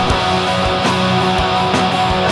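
Punk / post-hardcore band recording: distorted electric guitars strumming over bass, with a steady drum beat at about three hits a second.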